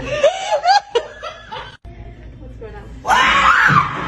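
A woman laughing loudly for about a second, then quieter sounds, then from about three seconds in a loud voice rising in pitch.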